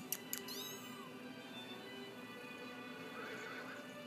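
Young kitten mewing: a few thin, high mews in the first second and a fainter one near the end, over steady background music.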